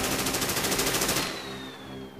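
A rapid burst of gunfire, many shots in quick even succession, that stops abruptly a little past halfway through.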